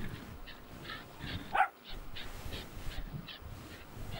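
A dog gives a short rising whine about one and a half seconds in, among a series of short, soft noises.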